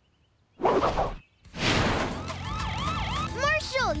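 Cartoon sound effects and score: a brief whoosh, then a swell of noise under a warbling, siren-like tone that rises and falls over and over and grows into a bouncy melody near the end.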